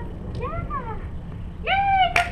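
Dutch Shepherd whining: two short whines that rise and fall about half a second in, then a louder, higher whine starting near the end.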